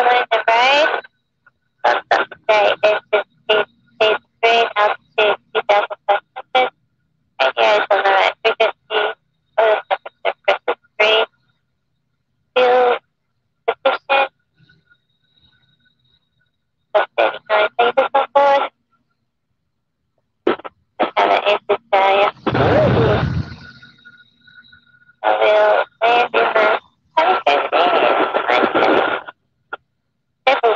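Voice audio over an aircraft radio/intercom in short phrases, gated to dead silence between them, with one broader rush of noise about 23 seconds in.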